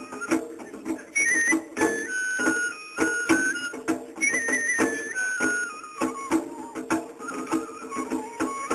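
Japanese festival float music (matsuri bayashi): a bamboo flute plays a high, stepping melody in two phrases over quick, steady drumbeats.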